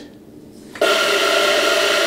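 Water spray from a LUXE Bidet NEO 320 nozzle on the hot setting hitting a plastic pail, starting suddenly about a second in: a loud, even hissing rush with a steady whine in it.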